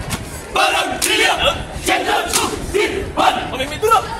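A group of voices shouting together in several loud yells, each lasting about a second.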